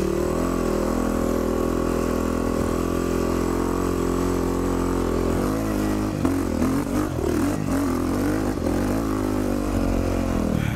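Dirt bike's single-cylinder four-stroke engine running at steady low revs, then revving up and down unevenly from about halfway through.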